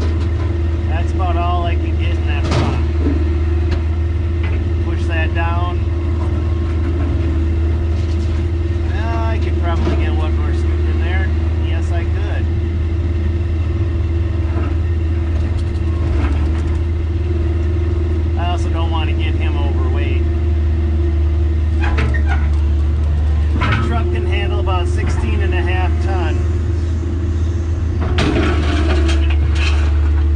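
Diesel engine of an older Kobelco excavator running steadily, heard from inside the cab, with short wavering high-pitched sounds recurring every few seconds as the machine works. A sharp knock comes about two and a half seconds in.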